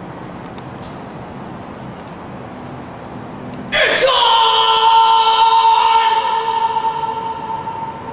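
A man sings one long, loud high note, starting suddenly about halfway in after a few seconds of faint background hiss. He holds a steady pitch for about four seconds and then lets it taper off, in an empty concrete parking garage.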